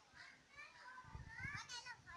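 Faint, distant chatter of children's voices, with no words clear enough to make out.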